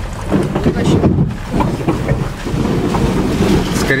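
Cabin noise of a car driving along a rutted lane of wet slush and ice: engine running and tyres churning and splashing through the slush, with an uneven, rumbling loudness.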